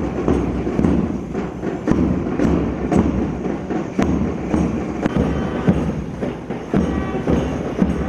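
March music for a procession, built on a steady, repeated drum beat, with a higher tune joining near the end.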